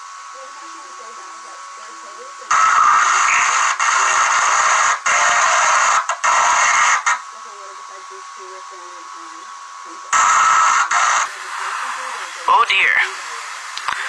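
Sound of a badly damaged VHS tape playing through a TV speaker: faint music from the tape, broken by two loud stretches of noise with a steady tone in it, about 2.5 to 7 seconds in and again briefly around 10 seconds. Then a steady static hiss as the tape loses its picture.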